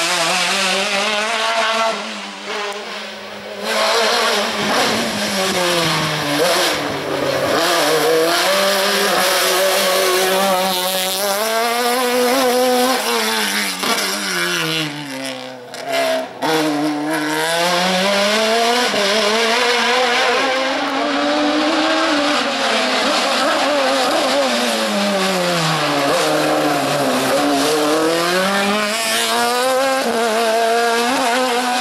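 Slalom racing car's engine revving hard, its pitch climbing and falling repeatedly as it accelerates and slows for tight corners and cone chicanes. The sound briefly dips twice.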